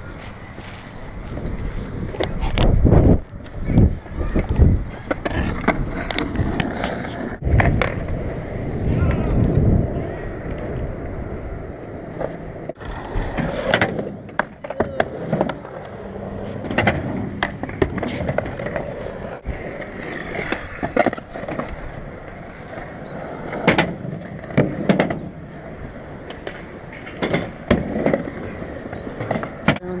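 Skateboard wheels rolling over asphalt and concrete, with repeated sharp clacks and knocks as boards hit the ground.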